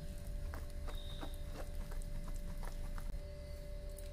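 A hand beating thick gram-flour (besan) batter in a steel bowl: a run of short, irregular wet slaps and clicks, over a steady low electrical hum.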